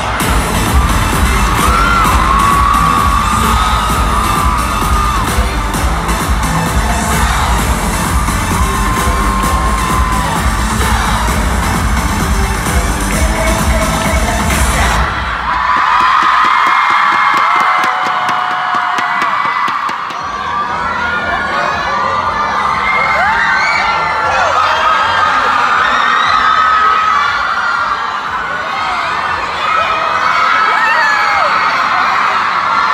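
Loud pop music from an arena sound system with a crowd screaming over it. About halfway through the music cuts off suddenly, and the crowd's high-pitched screaming and cheering carries on.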